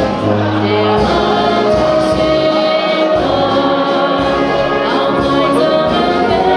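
Live wind band playing, with tuba bass notes, clarinet and brass, accompanying a woman singing into a microphone.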